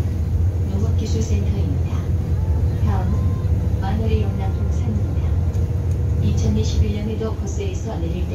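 Interior of a natural-gas city bus under way: steady low engine and road rumble, with voices now and then over it.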